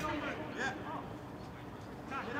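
Men's voices calling out across a floodlit football pitch during play, mostly in the first half second, then quieter voices and open-air background.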